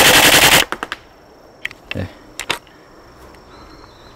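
Tokyo Marui MTR-16 G Edition gas blowback airsoft rifle firing on full auto, a fast, loud rattle of shots that stops abruptly under a second in as the 20-round magazine runs empty. A few separate clicks follow.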